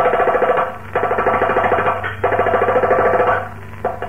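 Nadaswaram playing three quick phrases of rapidly pulsed, repeated notes, each about a second long with short breaks between them, over a steady low hum.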